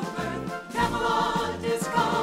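Choral devotional music: a choir singing with vibrato over instrumental accompaniment and a moving bass line, dipping briefly and then growing louder just under a second in.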